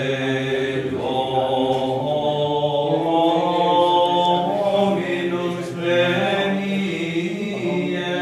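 Latin plainchant (Gregorian chant) sung in long, held notes that move slowly from pitch to pitch in a continuous line.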